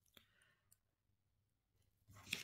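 Near silence: room tone with a few faint clicks, the clearest just after the start.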